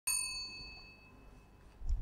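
A single ding from a desk call bell, struck once at the start and ringing away over about a second, the sign that the interview panel is calling the next candidate in. A low dull sound builds just before the end.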